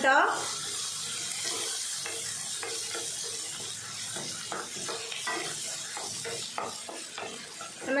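Chopped shallots, tomatoes and green chillies sizzling in oil in a non-stick kadai, with a steady hiss, while a wooden spatula stirs and scrapes them against the pan in short irregular strokes.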